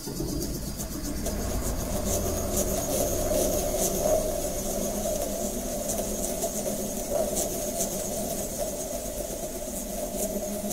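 Noise music built from modified recordings of found instruments: a steady, engine-like low drone with a buzzing band in the middle range, and irregular sharp ticks scattered over it.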